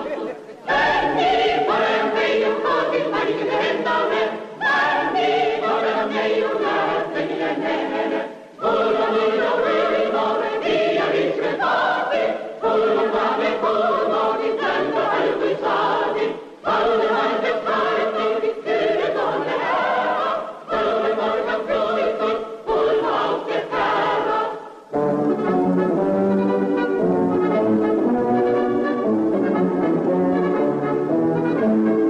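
A choir singing a song in phrases of a few seconds, with a short break between phrases. About 25 seconds in, the singing gives way to brass instruments playing a lower dance tune.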